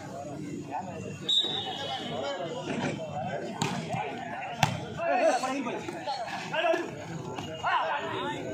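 Players and onlookers talking and calling out during a volleyball rally, with sharp smacks of the volleyball being struck by hand about three and a half and four and a half seconds in.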